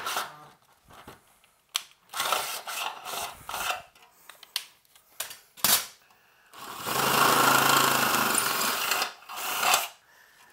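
Makita cordless drill boring a 7/16-inch hole through a sheet-metal chassis, run in short bursts and then one steadier run of two to three seconds near the end.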